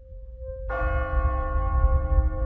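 A bell is struck once, about two-thirds of a second in, and keeps ringing with many overtones over a low rumble. A faint single held tone comes before the strike.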